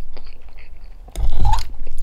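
Close-miked chewing of mashed potatoes and sausage: soft, wet mouth sounds that fade, then grow louder about halfway through.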